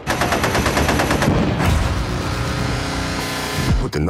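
Automatic gunfire in a rapid stream of about ten shots a second, as mixed for an action film trailer. From about a second and a half in, a steady held chord of tones sounds under the shots, and it all cuts off just before the end.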